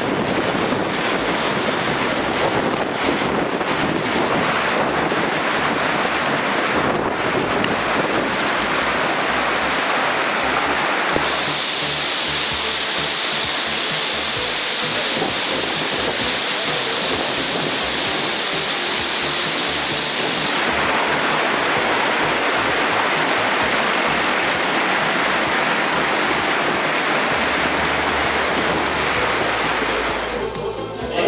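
Hail and rain falling steadily on cobbled paving, a dense even hiss that turns brighter and sharper from about eleven seconds in until about twenty seconds in.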